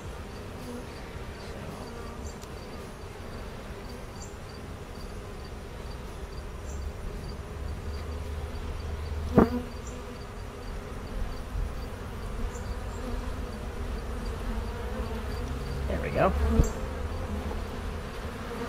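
Honeybees buzzing steadily around an open hive, with a sharp click about halfway through and another near the end.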